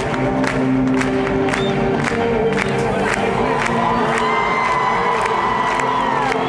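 Live rock band playing a song's instrumental intro over a cheering arena crowd: sustained chords with a steady beat about two per second, and a high held note that comes in about halfway and slides down near the end.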